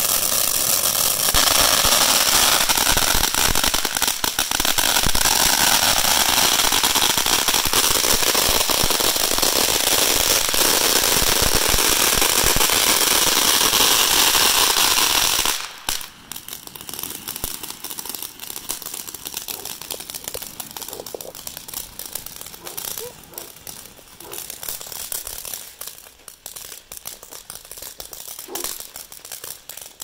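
Ground firework fountain burning: a loud hissing spray thick with crackles for about the first half, which drops off suddenly to a quieter gush with scattered crackles and pops.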